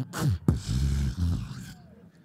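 Human beatboxing into a stage microphone: a couple of quick vocal drum strokes and a sharp click about half a second in, then a long low bass hum that fades away near the end.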